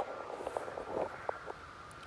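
A few light clicks and knocks over a faint steady high-pitched hum.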